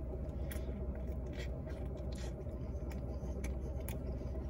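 Mouth-close chewing of a sausage in a bun: a bite, then soft clicks and smacks of chewing, about two a second. Underneath is a steady low rumble from inside the car's cabin.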